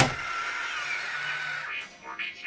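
Imaginext Batbot toy's electric motor running with a steady high whine as the robot transforms from tank to standing robot. The whine stops near the end as background music comes in.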